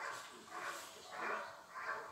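A dog barking steadily at a helper in a bite suit, about four barks in two seconds, as in a hold-and-bark exercise where the dog guards the motionless helper.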